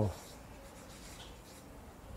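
Felt-tip marker scratching faintly on flip-chart paper in short strokes as words are written.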